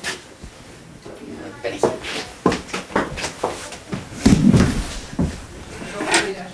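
Scattered clicks and knocks of small objects and furniture being handled, with a louder low knock or thud about four seconds in. Indistinct voices can be heard faintly underneath.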